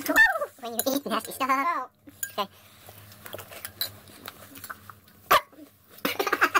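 Wordless groaning and gagging sounds from a teenage boy, loud and wavering for about two seconds. A quieter stretch with small clicks follows, with one sharp click about five seconds in.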